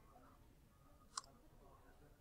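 A single sharp computer mouse click about a second in, against near-silent room tone.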